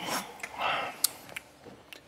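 A man breathes out and sniffs after a swallow of beer, with a few faint clicks.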